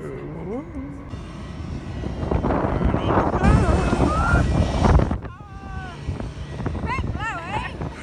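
Wind buffeting the microphone in loud gusts over the steady noise of aircraft engines on an airport apron, with voices over it. The noise cuts off abruptly about five seconds in, leaving quieter voices.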